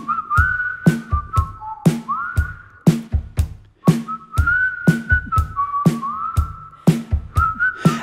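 Music: a person whistling a melody with short upward glides over a steady drum beat, the whistled intro of the song.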